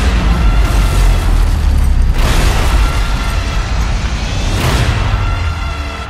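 A cinematic underwater torpedo explosion: a sudden heavy boom, then a deep rumble that carries on, with two more surges about two and four and a half seconds in, under trailer music.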